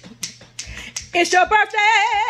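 Finger snaps keeping a steady beat, about three a second. About a second in, a woman starts singing over them, her voice wavering in a wide vibrato.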